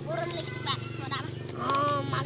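Young children's voices, short high calls and chatter, over a steady low hum. Near the end one voice holds a longer, level note.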